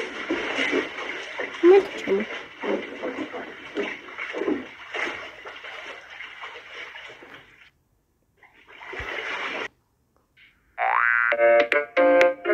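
Water splashing with voices as a person thrashes about in a water-filled oversized toilet bowl; it breaks off about eight seconds in. Music with a rising glide and then piano-like notes starts about a second before the end.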